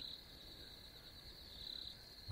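Faint, steady chirring of crickets.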